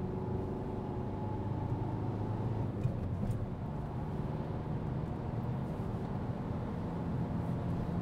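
Engine and road noise of a Peugeot car heard from inside its cabin while driving: a steady low hum.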